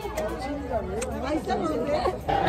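Indistinct chatter: voices talking that cannot be made out as words.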